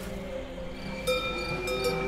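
Cowbells clanking several times, starting about a second in, over a steady sustained music bed.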